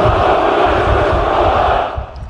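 A formation of special forces soldiers shouting their reply to the commander's greeting in unison: one long, drawn-out massed shout that cuts off near the end.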